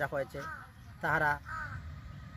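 A crow cawing twice in quick succession, about a second in, with a man's speech trailing off just before.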